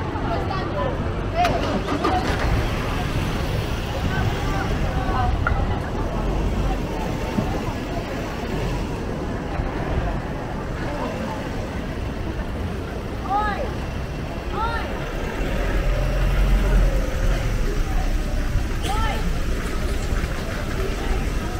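Street ambience in a busy pedestrian shopping street: voices of passers-by talking as they walk past, over a low rumble that swells about six seconds in and again near the end.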